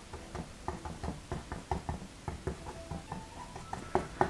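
Bristle paintbrush dabbing and pushing oil paint against a stretched canvas: a string of soft, irregular knocks, about four a second.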